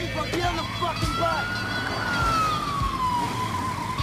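Siren wailing: one slow rise and fall in pitch, over a low steady hum.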